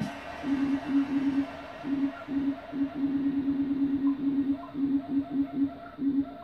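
Synthesizer notes from a Korg TR-Rack sound module, triggered over MIDI by hand movements over a light-up panel controller. They come as a string of short notes, mostly on one pitch, several a second in an uneven rhythm.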